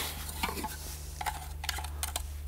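Applicator brush dabbing and scraping in a tin of solvent weld cement, with a few light clicks of plastic pipe fittings being handled.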